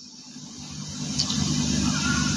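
Steady hiss and low hum of an old talk recording, played back through a laptop speaker in a pause between words; the noise swells back up after about a second.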